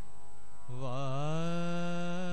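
A man singing a Sikh devotional chant into a microphone: about two-thirds of the way in his voice comes in, slides up and holds one long, slightly wavering note.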